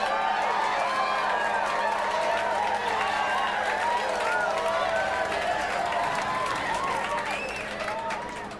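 A crowd cheering and chattering, many voices at once, starting suddenly and fading out near the end.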